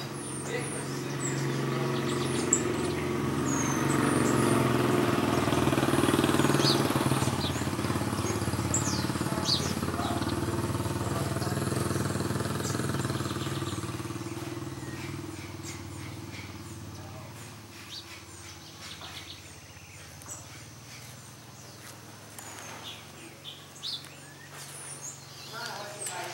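A motor vehicle passes slowly, its engine growing to its loudest about six seconds in and fading away over the next ten seconds or so. Small birds chirp with short high calls throughout.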